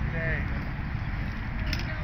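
Wind rumbling steadily on the microphone, with a short voiced call falling in pitch at the start and a light metallic clink about three-quarters of the way through.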